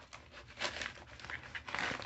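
Yellow padded paper mailer crinkling and rustling as it is handled and slit open with a knife, in a few scratchy bursts, the loudest near the end.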